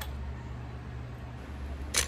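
Paper being handled and cut with scissors, faint over a steady low hum, ending in one sharp, loud swish just before the end.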